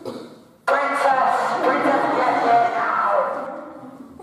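Loud blast from a handheld megaphone, coming in suddenly just over half a second in and lasting about three seconds before fading.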